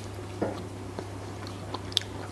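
A person chewing a bite of home-cured, air-dried chicken breast (basturma), with a few soft, faint clicks of the mouth.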